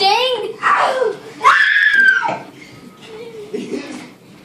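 Children shrieking and yelling in rough play: a quick warbling squeal at the start, then one long high shriek in the middle, with quieter cries after it.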